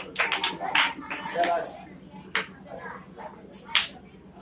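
Hand clapping at about three claps a second that stops after the first second, followed by a few scattered claps, with children's voices in between.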